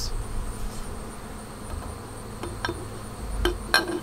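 Honeybees buzzing in a busy apiary, a steady low hum. In the last second or so come a few sharp clicks as a glass quart mason jar full of honey is handled.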